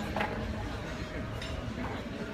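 Strong wind blowing on the microphone, a steady low noise, with faint voices now and then.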